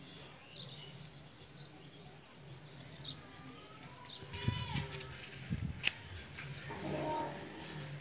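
Outdoor background sound with short faint high chirps in the first half. From about halfway it gets busier, with louder pitched calls and a sharp click about six seconds in.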